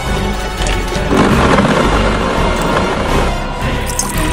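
Countertop blender running for about two seconds, starting about a second in, over background music that plays throughout.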